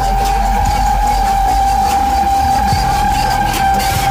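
Rear tyre of a GMC Sierra pickup spinning on the pavement in a burnout: a steady high squeal held unbroken, over a heavy low engine rumble.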